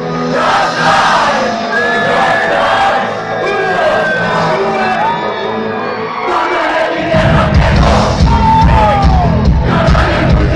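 Live concert: a crowd shouting and singing along over the band's music, with heavy bass and drums coming in about seven seconds in.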